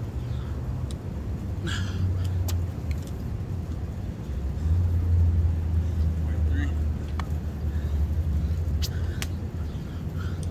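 A steady low motor rumble that grows louder about halfway through, with scattered light clicks and taps over it.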